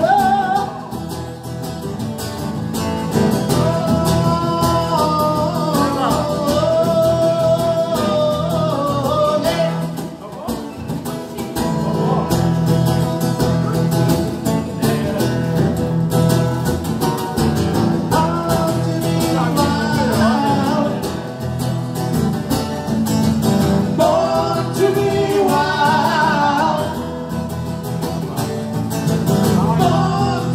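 Live amplified music: a male singer sings a melody over electric guitar, with a brief dip in loudness about a third of the way in.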